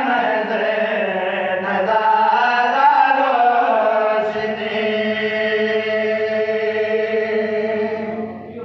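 A man chanting a qasida (a devotional poem) in a solo melodic voice. It bends through a phrase and then holds one long steady note from about halfway through.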